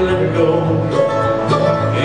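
Live acoustic bluegrass band playing an instrumental break, with picked guitar and other plucked strings.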